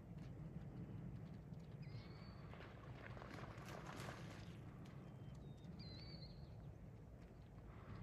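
Faint outdoor sound of a dog running on a sandy creek bed, with a brief splash about four seconds in as she crosses a shallow channel of water. Short high bird calls come twice, about two seconds in and again near six seconds.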